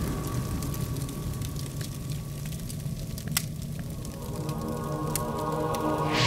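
Dark, low background film score with sustained tones, over a low rumble and a few scattered crackles from fire sound effects; the music swells from about four and a half seconds in.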